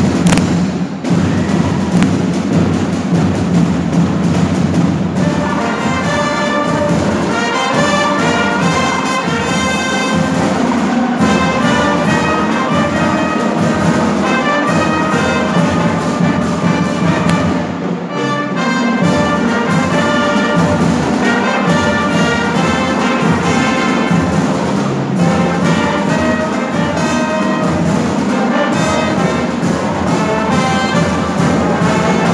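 Fanfarra (marching brass band) playing: trumpets, trombones, euphoniums and sousaphones in full, sustained brass chords with moving melody lines, a brief dip in loudness a little past the middle.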